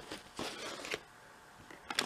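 Faint rustling and scraping as a makeup palette is slipped into a zippered iridescent cosmetic pouch, in a few short bursts during the first second, with a small click just before the end.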